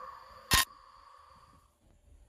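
A single sharp camera-shutter click about half a second in, over the fading last note of an electronic intro jingle.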